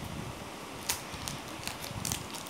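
Foil Pokémon card booster pack wrapper crinkling and crackling as it is worked open by hand, with irregular small crackles and one sharper snap a little under a second in.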